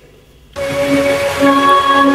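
Music cuts in abruptly about half a second in: long, held notes of keyboard-played orchestral strings, low cello-and-bass notes held under higher ones.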